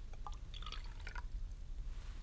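Dilute hydrochloric acid poured from one glass beaker into a glass beaker of sodium hydroxide solution: a faint trickle and splashing for about the first second, then it stops.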